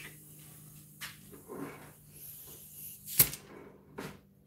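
An air hose being connected to an airbrush: small handling knocks, then one sharp click of the fitting about three seconds in, over a low steady hum.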